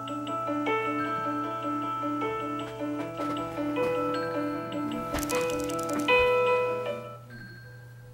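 iPhone X alarm tone ringing: a melody of held notes over a repeating low pulse. About seven seconds in it drops sharply in volume, the attention-aware Face ID lowering the alarm once the owner looks at the phone.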